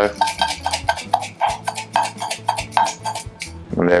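Quick light tapping on a small metal sifter, about five taps a second, shaking icing sugar over a mint julep. The tapping stops shortly before the end, over steady background music.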